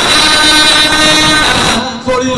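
A man's voice through a microphone holding one long, steady sung note in a chant, ending shortly before two seconds in.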